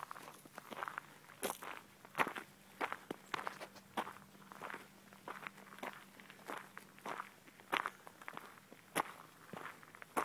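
Footsteps walking through dry leaf litter and dead grass, each step a crisp crunch, at about two steps a second.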